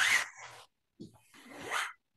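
A cotton yoga strap's webbing pulled through its buckle to make a loop: two rasping pulls about a second apart, the second rising in pitch.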